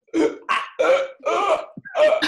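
Several people laughing and gasping in a run of about four short bursts.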